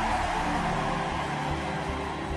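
Sustained background music of long held tones under a steady noisy din, slowly fading a little.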